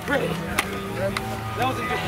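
Lacrosse players' voices overlapping in short fragments, with several sharp taps and slaps of gloves and sticks meeting as the two teams pass each other in a handshake line.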